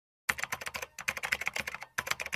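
Rapid keyboard typing clicks, a typing sound effect that keeps pace with on-screen text being typed out. The clicks begin a moment in and pause briefly just before a second in.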